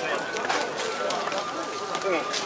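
Indistinct voices of people talking, over a faint steady high tone and scattered light clicks.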